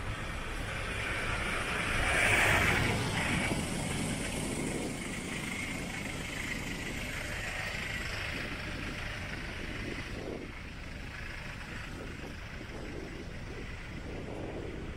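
Road traffic: steady rumble of car engines and tyres, with one louder vehicle passing close about two seconds in.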